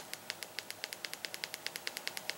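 Faint, rapid, even clicking, about ten clicks a second, from the buttons of an Xfinity XR11 TV remote as the thumb works the direction pad to scroll quickly down a menu list.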